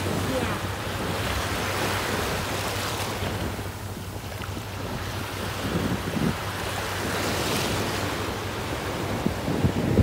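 Small waves washing up and draining back over a sandy beach, with wind buffeting the microphone.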